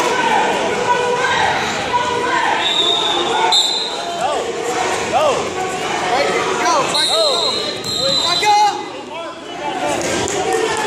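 Echoing chatter and voices of spectators in a large gym. From about four to eight seconds in, a run of short squeaks comes through, like shoe soles squeaking on the mat as the wrestlers move on their feet.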